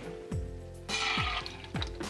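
Water running from a tap into a container, coming in about a second in, under background music.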